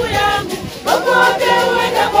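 A group of people singing together as a choir, the voices dipping briefly just before the middle and then coming back louder.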